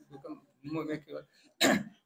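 A man's single short, sharp cough about one and a half seconds in, louder than the few soft spoken words before it.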